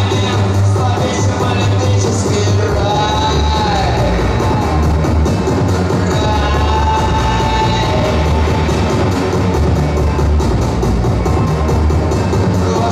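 Loud live electronic body music through a club PA: a heavy, steady bass under a fast ticking beat, with a gliding synth or vocal line rising and falling a few seconds in.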